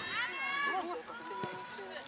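Women footballers' voices calling out to each other, several overlapping shouts with no clear words.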